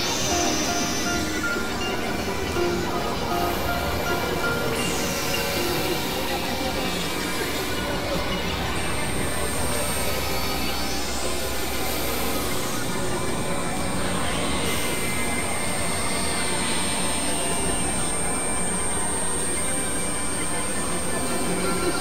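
Experimental electronic synthesizer music: a dense, noisy drone with whooshing sweeps that rise and fall every few seconds. A thin, steady high tone comes in a little before halfway, and a low rumble drops out a little after.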